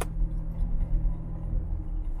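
Car driving along, heard from inside the cabin: a steady low engine and road rumble, with one sharp click right at the start.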